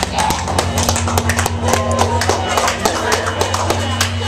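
Live metal band playing loud through amplifiers: low guitar and bass notes held and ringing, with many scattered drum and cymbal hits.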